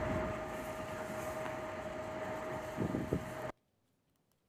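Outdoor parking-lot ambience from video footage: a steady rush of background noise with a constant mid-pitched hum. It cuts off abruptly about three and a half seconds in.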